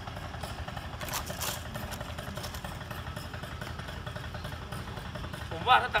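Small two-stroke engine of a backpack mist blower idling steadily, a low pulsing rumble.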